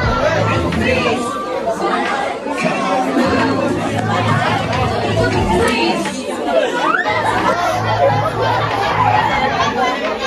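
A crowd of children and teenagers chattering and calling out all at once, many voices overlapping in a large room.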